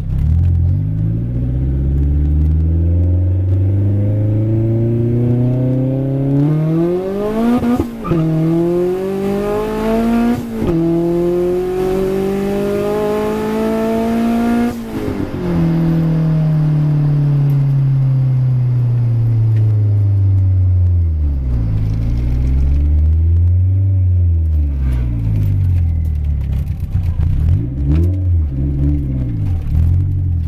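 Turbocharged Honda Prelude four-cylinder engine heard from inside the car on a hard acceleration run: the revs climb steadily, break sharply at upshifts about eight and ten and a half seconds in and climb again, then the driver lets off about fifteen seconds in and the revs fall away. Near the end the engine wavers up and down at lower revs.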